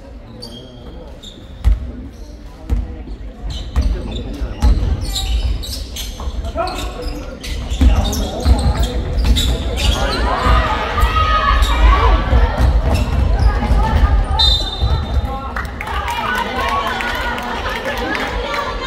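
Basketball bouncing on a hardwood court in a large hall: single dribbles about a second apart, then busier game play with more bounces, sneakers squeaking on the floor and players' voices. A short high whistle comes about three-quarters of the way through.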